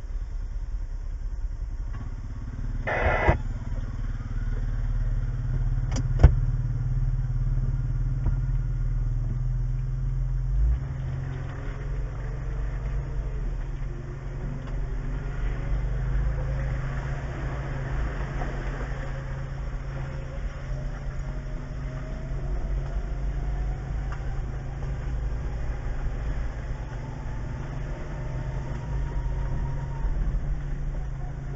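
Jeep Wrangler engine idling, heard from inside the cab as a steady low hum. A short loud burst comes about 3 s in and a sharp click about 6 s in. Over the second half an engine tone climbs slowly as the vehicles start up the trail.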